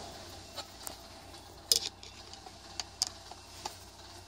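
A few faint clicks and scrapes of a Phillips screwdriver and screw being pushed hard into the hole in a metal basketball pole tube, the sharpest click about halfway through, over a low steady hum.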